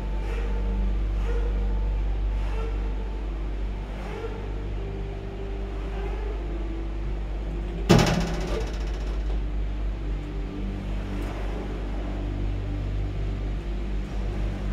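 Detachable gondola cabin of a cable car creeping through its terminal station, with a steady low rumble, faint music and one sharp metallic clank about eight seconds in.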